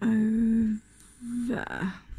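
A person humming: one steady note held for nearly a second, then after a short pause a shorter note that breaks up near the end.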